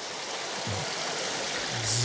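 A small forest brook running over stones, a steady rush of water.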